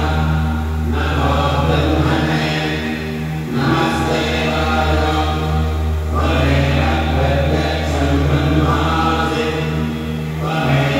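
Hindu devotional mantra chanting, sung in phrases of two to three seconds with short breaks between them, over a steady low hum.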